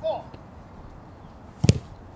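A soccer ball kicked once, a single sharp thud about a second and a half in.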